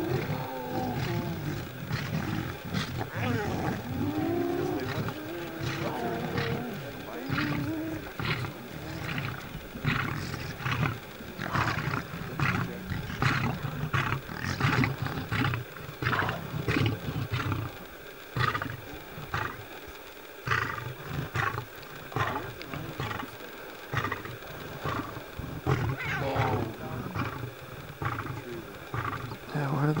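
Male lion growling in low, rough bursts over its buffalo kill, the growls strongest through the first half. A defensive warning at the spotted hyenas pressing in on the carcass.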